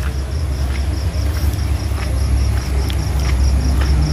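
Crickets chirping in an even, high-pitched pulse of about six beats a second, over a loud steady low rumble and a few faint ticks.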